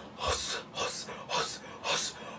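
A man making a rhythmic series of short, sharp, breathy gasps with his mouth, about two a second, as a vocal sound trick.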